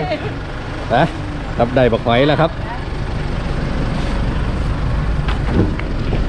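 A steady low vehicle engine rumble, growing slightly louder over the last few seconds, under a voice saying "arkun" (Khmer for thank you) about two seconds in.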